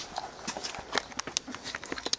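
A run of irregular light clicks and taps, several a second and unevenly spaced, with no machine running.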